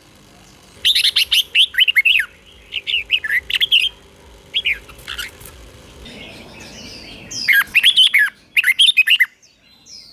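Red-whiskered bulbul singing in short bursts of quick, falling whistled notes, five phrases with brief pauses between them.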